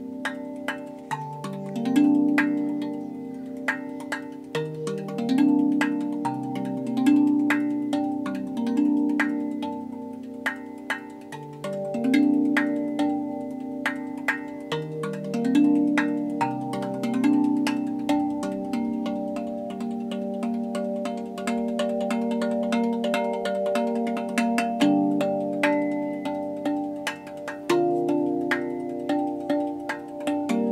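RAV Vast steel tongue drum played by hand: melodic notes struck every second or two, each ringing on long and overlapping the next, with light finger taps between them.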